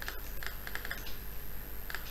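A few soft clicks at a computer, a small cluster about two thirds of a second in and another just before the end, over a low steady hum.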